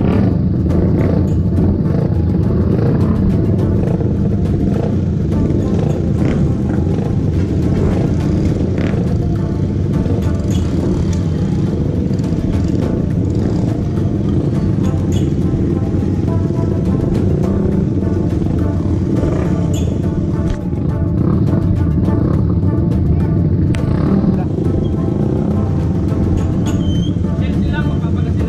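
Several underbone motorcycle engines running steadily as a group of bikes idle and move off together, with music playing over them.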